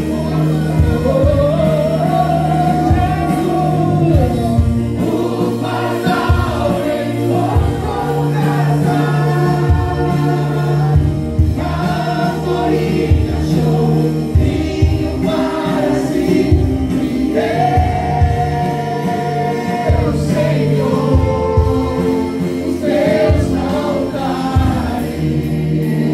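Christian gospel song: a woman and a man singing, with a band accompanying, its bass notes held under long, gliding vocal lines.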